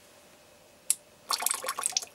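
Drops of water from a water drop valve falling into a shallow tray of water: a single sharp plip about a second in, then a quick run of drips and splashes near the end.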